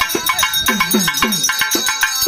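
Pambai drums playing a fast, even rhythm of about four strokes a second, the low strokes bending in pitch, over a ringing metallic percussion.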